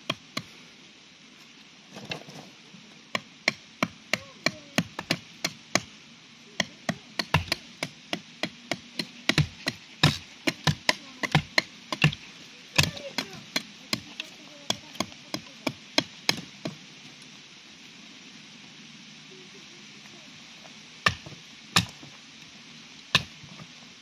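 Batoning with an Extrema Ratio Doberman fixed-blade knife: a wooden baton striking the knife's spine again and again, about two sharp knocks a second, as the blade is driven down through a log to split it. The strikes stop about two thirds of the way in, then three more come near the end.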